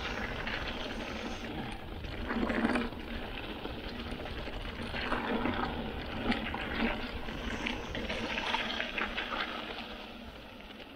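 Mountain bike rolling down a dirt track: steady tyre noise and bike rattle mixed with wind rushing over the camera microphone, with a louder patch of rattle about two and a half seconds in.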